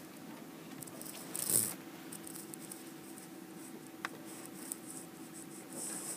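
Quiet room tone with a steady faint hum, a brief soft rustle about a second and a half in, and a single sharp click about four seconds in.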